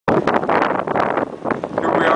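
Wind buffeting the microphone on a ferry, a loud, gusty rush that rises and falls.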